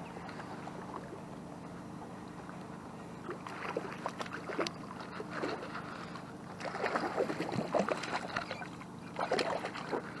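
Hooked rainbow trout splashing at the water's surface beside the landing net, in irregular sloshes that start a few seconds in and grow louder, the loudest near the end.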